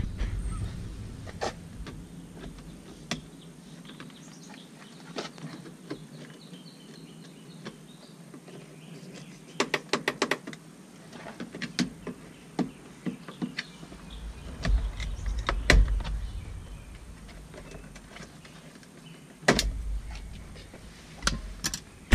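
Scattered clicks and snaps of the plastic door-handle trim on a Nissan Pathfinder door panel being pried loose with a screwdriver, with a quick run of clicks about ten seconds in. A low rumble comes and goes in the second half.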